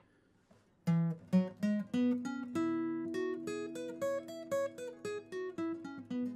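Acoustic guitar picking single notes of the E major pentatonic scale up around the 9th to 12th fret, each note left ringing into the next. The run starts about a second in, climbs in pitch and comes back down.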